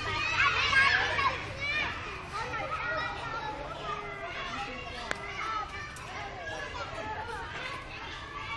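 Young children's high-pitched voices calling and chattering as they play, loudest in the first two seconds, with one sharp click about five seconds in.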